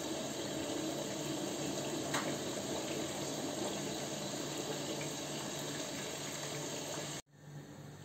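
Kitchen tap running steadily into a sink while rice is rinsed, with a faint steady hum under it; it cuts off suddenly about seven seconds in.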